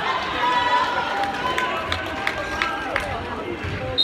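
Basketball gym noise: spectators' voices, sneakers squeaking on the hardwood floor, and a few sharp knocks of the ball bouncing. A referee's whistle starts right at the end.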